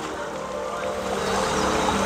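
Fast water rushing down a concrete irrigation channel, a steady hiss that grows louder over the two seconds, with faint background music underneath.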